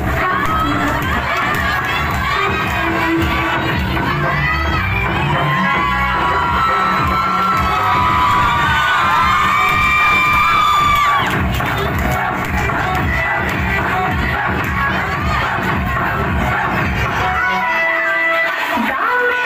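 A packed crowd of young women shouting and cheering over dance music, the high cheers swelling to a peak about ten seconds in and then dropping off.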